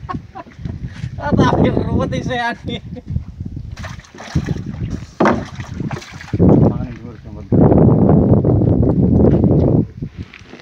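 A fish thrashing and splashing in shallow bilge water in the bottom of a boat, loudest in a burst of about two seconds near the end, with a laugh a few seconds in.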